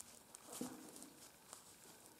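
Near silence, with a few faint soft ticks as fingers handle the edge of a taped gauze compress.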